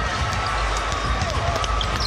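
Arena crowd noise with a basketball being dribbled on a hardwood court, heard as repeated low thuds.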